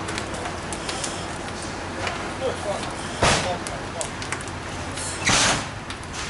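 A building fire burning: a steady rush with scattered crackles and pops, broken by two loud noisy bursts about three and five seconds in, with voices faint underneath.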